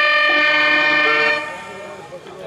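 Harmonium sounding a held reed chord that starts sharply, holds for about a second and a half, then fades away.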